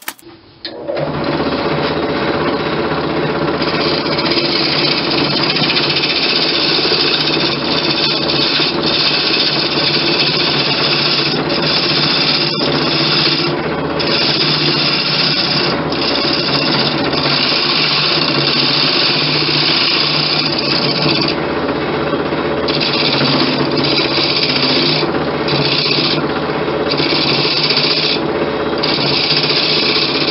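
Wood lathe running with a steady hum while a turning tool roughs down a spinning segmented wooden blank. The scraping cut comes and goes in passes of a second or two.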